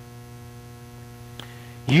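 Steady electrical mains hum, a low buzz with a stack of even overtones, with one faint click about one and a half seconds in. A man's voice starts just before the end.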